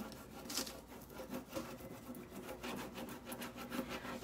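Soft, quick, irregular rubbing strokes: a décor transfer sheet being rubbed down onto a painted board to make the design release.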